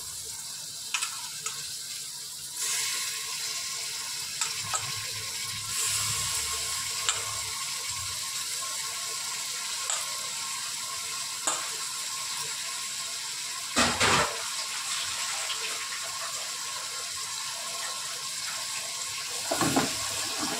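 Minced meat sizzling as it fries in oil in an open pressure cooker, with occasional clicks and scrapes of a wooden spatula. The sizzle grows louder about two and a half seconds in, and there is a brief louder clatter about fourteen seconds in.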